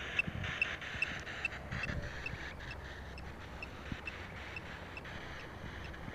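Quiet background: a low steady rumble with a few soft clicks, and a faint high pip repeating about two and a half times a second that fades out about two seconds in.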